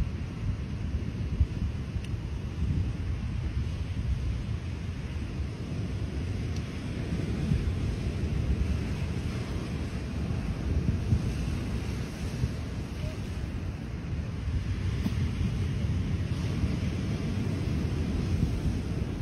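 Wind buffeting the microphone, a rumbling, uneven noise, with surf breaking in the background.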